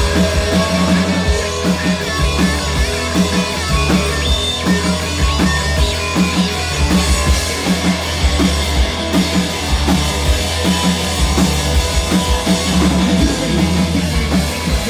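Live rock band playing loud without vocals: drums keeping a steady, driving beat under distorted electric guitar.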